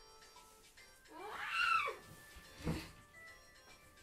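A girl's drawn-out sleepy whine, rising and then falling in pitch, about a second in, as she protests at having to wake up. A shorter low sound follows, all over soft background music.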